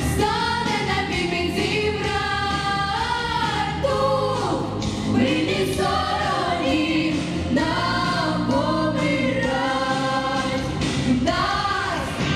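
A girls' vocal ensemble singing a pop song together into microphones over an instrumental backing track.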